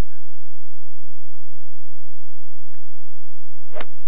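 A golf iron striking a ball once, a single sharp click near the end, over low steady background noise.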